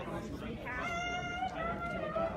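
Background chatter of people in a large hall, joined under a second in by a high-pitched, drawn-out vocal sound held on a nearly steady, slightly rising note.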